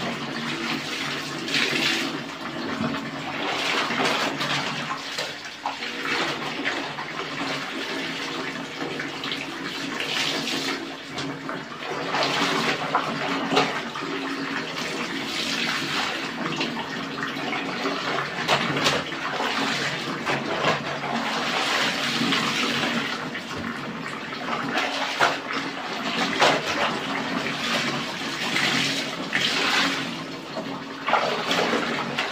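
Laundry being washed by hand in a plastic basin of soapy water: garments are plunged, squeezed and lifted so water sloshes, splashes and pours back into the tub, in repeated surges.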